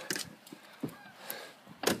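Handling noise: a few faint clicks and knocks as things are picked up and moved, with one sharper knock near the end.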